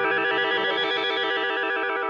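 Music: a sustained electronic keyboard chord with a fast, even warble, held steady at one level.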